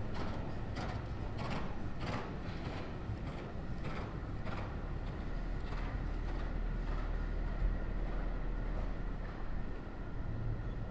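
A dressage horse's hoofbeats on a sand arena surface, about two a second, dying away about six seconds in as the horse comes back to a halt. A steady low rumble runs underneath.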